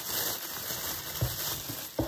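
Bubble-wrap plastic bag crinkling and rustling as hands rummage small items out of it, with a few faint ticks.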